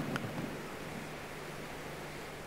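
Room tone: a steady background hiss, with a faint low hum coming in about halfway through.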